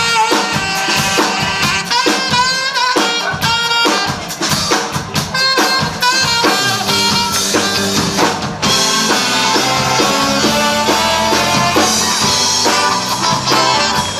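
A live band playing: two saxophones over a drum kit, with steady drum strokes. About two-thirds of the way through, the sound fills out with fuller, held low notes.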